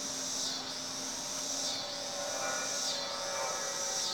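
Outdoor insect chorus at dusk: a steady high-pitched buzz that dips and swells again about once a second, with a faint low hum beneath.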